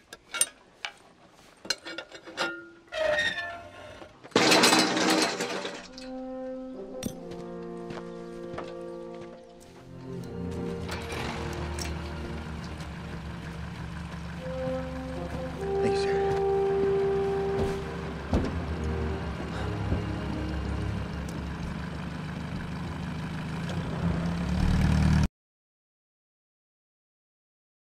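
A few sharp metal clicks as the pin is worked out of the flagpole's hinged base, then a loud crash about four seconds in as the pole comes down. An orchestral film score with brass follows and cuts off suddenly near the end.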